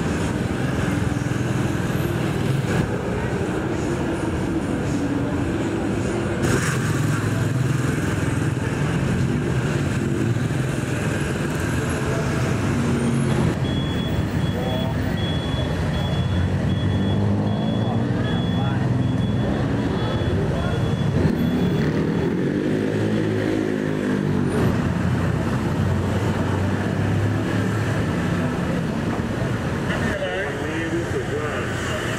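Busy street traffic: motor scooters and cars running and passing, with people talking in the background. Around two-thirds of the way through, one engine rises and falls in pitch as it goes by.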